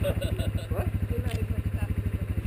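ATV engine idling steadily, a low even putter.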